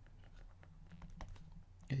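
Faint, irregular light clicks and taps of a stylus on a tablet while words are handwritten, over a low steady hum.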